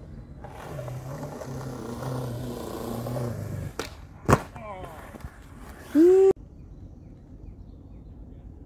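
Skateboard wheels rolling on concrete, then the sharp pop of the tail and a loud slap of the board landing about four seconds in, during a kickflip. A short, loud voice-like call follows about two seconds later and cuts off suddenly.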